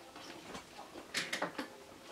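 A person biting into and chewing a chocolate caramel protein bar with crunchy bits on top: a few faint, quick crunching clicks about a second in.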